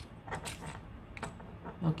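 Small plastic battery compartment of a BOYA BY-M1 lavalier microphone's power module being unscrewed by hand: a few short clicks and creaks.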